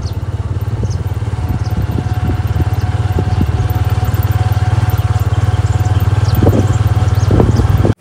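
Motorcycle engine running steadily as the bike is ridden along at a constant pace.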